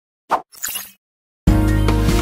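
Channel intro: a short pop followed by a brief swish, then a moment of silence before intro music with a steady bass starts abruptly about three-quarters of the way through.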